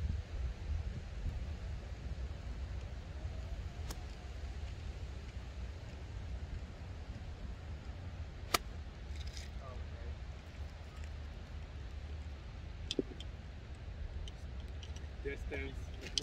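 A pitching wedge strikes a golf ball once, a single sharp click about eight and a half seconds in, over a steady rumble of wind on the microphone.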